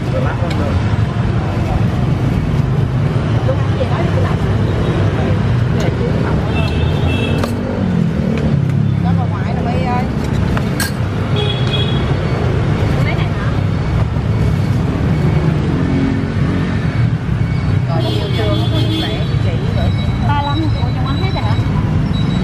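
Steady street traffic noise, a constant low engine rumble, with people talking in the background and a couple of sharp clicks.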